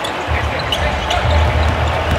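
Basketball dribbled on a hardwood court: a run of low bounces.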